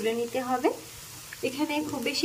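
Paneer cubes sizzling as they fry in hot refined oil in a non-stick kadai, turned with a spatula. A woman's voice talks over the frying for most of it, pausing briefly about a second in.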